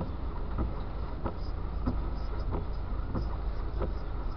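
Car cabin rumble from an engine and tyres in slow traffic. Over it, an even ticking about every 0.6 s, the turn-signal flasher during a lane change.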